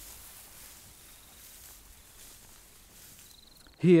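Faint, steady outdoor background hiss with no clear events, and a short thin high tone just before a man's voice comes in at the end.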